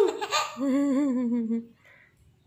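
Baby laughing: a high-pitched squeal that ends just as it starts, then a longer wavering laugh that trails off shortly before the end.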